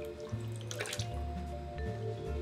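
Liquid ceramic glaze sloshing as a bisque piece is dipped by hand into a glaze tank, with a short splash a little under a second in.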